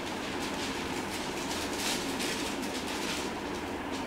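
Steady background room noise with a few faint, soft rustles.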